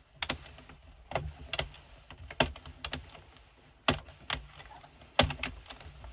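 Addi circular knitting machine being cranked through the first round of a cast on: sharp plastic clicks and clacks as the needles ride through the cam track, coming irregularly, often in pairs, every half second or so. The first round is a bit noisy.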